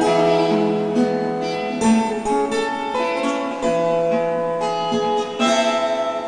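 Acoustic guitar strumming and picking chords, changing chord about once a second, with two harder strums, about two seconds in and near the end.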